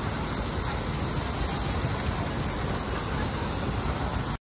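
Wind buffeting the microphone: a steady rushing noise with an uneven low rumble.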